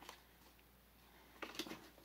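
Near silence: quiet room tone with a low steady hum, a faint click at the start and a few faint clicks about one and a half seconds in.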